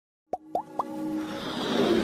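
Animated logo-intro sound effects: three short blips, each rising in pitch, about a quarter second apart, followed by a swelling whoosh that builds toward the end.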